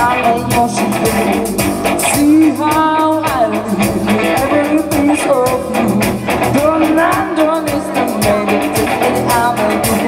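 Live rock band playing: a woman's lead vocal over electric guitar, bass, keyboard and drums, amplified through the stage speakers.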